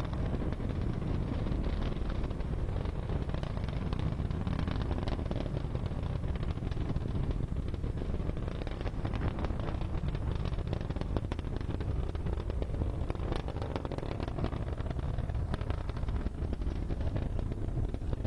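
Falcon 9 rocket's nine Merlin engines during ascent, heard from a distance: a steady deep rumble laced with dense crackling, the crackle thickest in the middle seconds.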